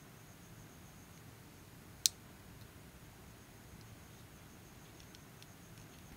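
Quiet handling of a small MP3 player being taken apart. There is one sharp click about two seconds in, as a part of the player's casing or mainboard is worked loose, then a few faint ticks near the end.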